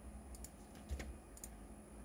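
A handful of faint clicks from a computer mouse, the loudest about halfway through, over a low electrical hum.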